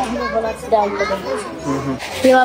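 Children's voices talking over one another, with adult speech mixed in.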